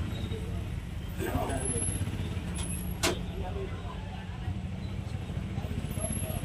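Steady low street rumble, like traffic, with people's voices murmuring over it and one sharp click about three seconds in.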